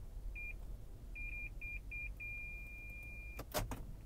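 Lexus RX 450h parking-sensor warning beeping in the cabin in reverse: single high beeps about a second apart quicken and merge into a steady tone for about a second, the sign of an obstacle very close behind. The tone cuts off and two sharp clicks follow.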